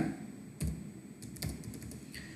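Typing on a computer keyboard: a handful of separate, faint keystrokes.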